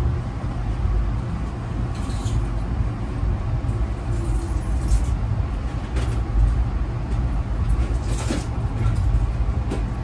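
Amtrak passenger train running, heard from inside the car: a steady low rumble of wheels on track, with a few short clacks at about two, five, six and eight seconds in.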